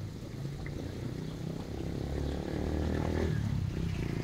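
Low rumble of a vehicle engine nearby, swelling toward the end, over the splashing of a tiered fountain.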